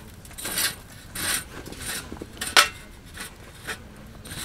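Metal tongs scraping and clinking against a campfire stand and a metal ember-snuffing pot as the embers are cleared into the pot. A few short rasping scrapes, with a sharp metallic clink about two and a half seconds in and a lighter one near the end.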